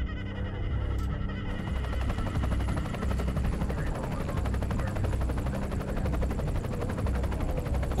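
Background music: a low, sustained drone, joined about a second and a half in by a fast, even flutter that runs on steadily.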